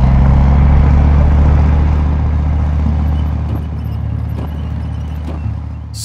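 Tracked armoured vehicle rumbling by: a loud, steady low engine drone with track and road-wheel noise, cutting in suddenly and easing off slightly toward the end.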